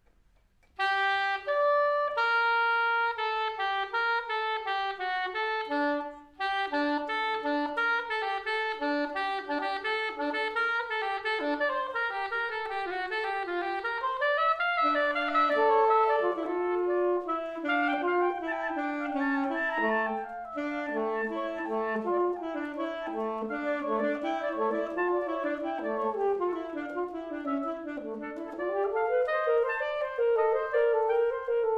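Saxophone quartet playing live, four lines moving together in chords. It comes in about a second in and pauses briefly around six seconds before carrying on.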